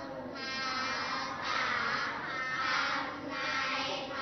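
Several voices chanting together, in swelling phrases about a second long.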